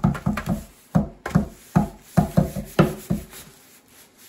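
Hands patting a sheet of paper pressed down onto paint-covered bubble wrap on a table: a quick run of dull thumps that stops about three seconds in.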